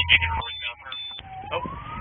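Police siren wailing, its pitch sliding slowly down and then climbing again, heard from inside a patrol car.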